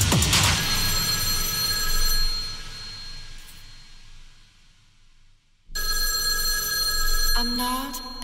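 Techno mix breakdown: the kick-drum beat stops, leaving a held chord of steady high synth tones that fades almost to silence, then cuts back in suddenly; a voice begins singing near the end.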